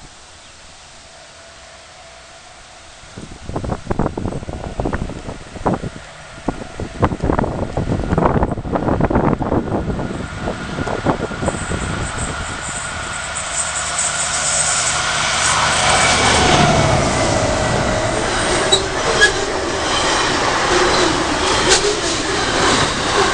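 Diesel-hauled intermodal freight train approaching and then passing close at speed. It is quiet at first, with irregular clatter from about three seconds in. From about twelve seconds the sound grows as the locomotives near, then stays loud and steady as they and the container wagons run by.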